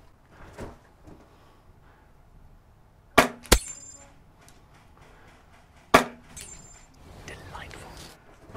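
Airsoft rifle firing three sharp single shots: two in quick succession about three seconds in, then one more about three seconds later, the first and last each trailing a brief metallic ring.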